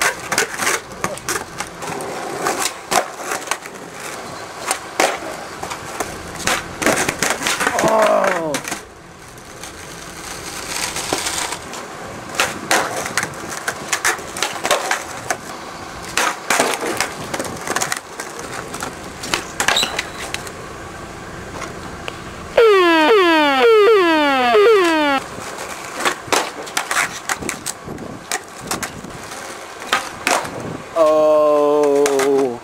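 Skateboard flatland tricks on concrete: repeated sharp pops of the tail, clacks of the board landing and wheels rolling. From about 22 to 25 seconds in, a loud, sudden run of rapidly repeating falling-pitch chirps cuts in and stops abruptly.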